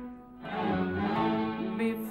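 An Arabic orchestra's bowed string section plays a melodic instrumental phrase in stepping notes. The phrase enters after a brief drop in level about half a second in.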